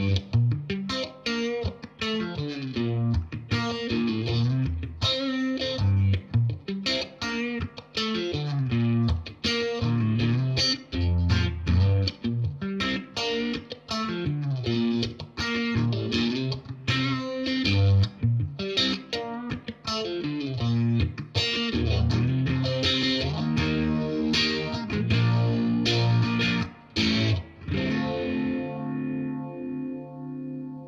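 Fender Stratocaster electric guitar playing a melodic piece of single notes and chords through a Marshall Bluesbreaker drive pedal and a modulation pedal, a phaser or Uni-Vibe, giving a lightly driven tone with movement. Near the end a last chord is left to ring and fade.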